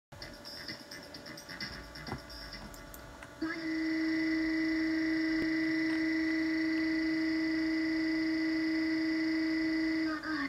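A cartoon character's long, loud scream, played from a computer's speakers and picked up by a phone. It starts abruptly about three and a half seconds in and holds one steady pitch throughout, after a quieter stretch of mixed soundtrack.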